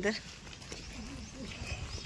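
The last syllable of a woman's spoken exclamation, then a low outdoor background with faint, distant voices.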